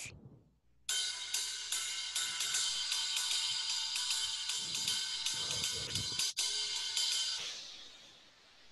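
Riveted ride cymbal struck with a drumstick in a steady ride pattern, the rivets adding a sizzle to its ringing wash. It starts about a second in and stops shortly before the end, leaving a short ring-out.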